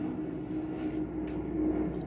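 Steady low background hum with a faint held tone, unchanging throughout.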